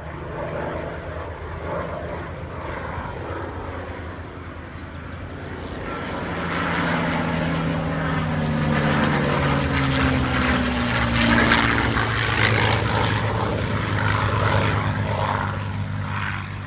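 Propeller fighters flying past together: a P-51 Mustang's V-12 and an F4U Corsair's radial piston engine. The engines build up loud from about six seconds in and are loudest around ten to twelve seconds, their tone falling in pitch as the planes go by, then fade slightly as they pull away.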